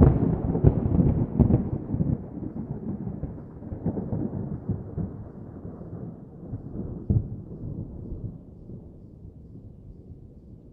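Thunder: a sudden loud clap with sharp cracks in the first couple of seconds, then a long low rumble that slowly fades and grows duller as it dies away.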